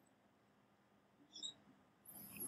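Near silence: room tone, with one faint, brief high-pitched chirp about a second and a half in.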